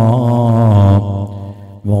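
A man chanting an Arabic devotional verse, holding one long note with a slight waver for about a second, then letting it fade away.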